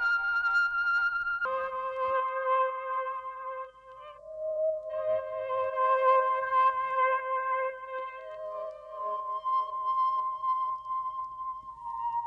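Sustained, filtered keys chords from an Akai MPC One+ stock keys sound, played back through the AIR Flavor lo-fi effect, with thin, band-limited tone and little bass. The chord changes about a second and a half in, and the sound dips briefly near four seconds before the next chord swells in.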